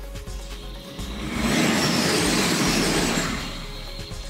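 Background music, with a road vehicle passing: a rush of noise swells from about a second in and fades out by about three seconds, louder than the music at its peak.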